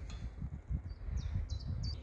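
Faint bird chirps: a few short, high notes in the second half, over a low outdoor background rumble.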